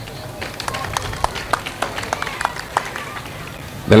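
Scattered light clapping from an outdoor audience, irregular claps a few times a second, over a low murmur of the crowd.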